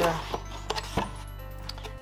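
Background music with a steady low tone, over which a few sharp clicks and taps of cardboard sound as the flap of a small cardboard box is lifted open.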